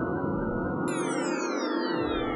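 Synthesizer music run through the Disco rotating multi-tap delay: many echo copies overlap and glide in pitch as the delay lines turn. About a second in, a new set of falling pitch glides starts and the bass drops out.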